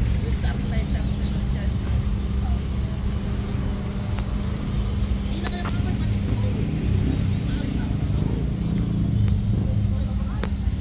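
Busy parking-lot street ambience: a steady low hum of vehicle engines and traffic, with scattered voices of people nearby.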